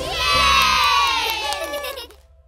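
A group of children cheering and shouting together, the voices falling away and fading out near the end.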